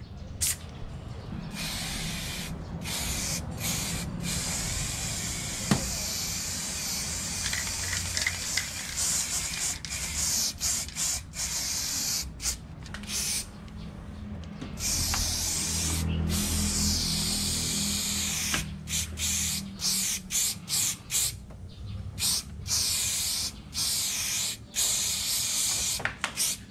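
Aerosol spray-paint cans hissing as paint is sprayed onto a wall, in a string of sprays of varying length broken by many short pauses.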